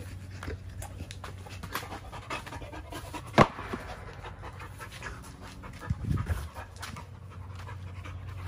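A pit bull-type dog panting, with scattered small clicks and one sharp knock about three and a half seconds in.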